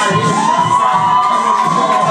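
Live hip-hop backing beat over a PA, with a crowd cheering and shouting. A long high note rises slightly and falls back over it.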